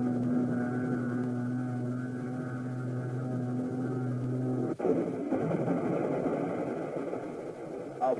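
Aircraft engine drone, a steady, low, pitched hum, cut off abruptly about four and a half seconds in and replaced by a rough, rushing noise.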